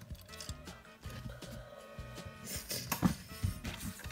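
Background music with sustained tones and a repeating bass line, over the clicks of plastic Lego pieces being handled and moved. The loudest is a sharp knock about three seconds in.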